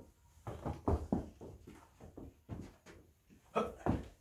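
Footsteps and scuffing of a person moving sideways to catch a thrown pair of rolled-up socks: a run of short, irregular soft knocks, loudest about a second in.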